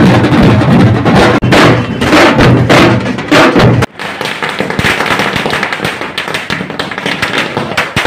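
A tasha drum band beating large drums. About four seconds in, this gives way to a long string of firecrackers going off in rapid, irregular cracks and bangs.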